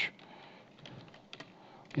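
A few faint keystrokes on a computer keyboard as a short word is typed and entered.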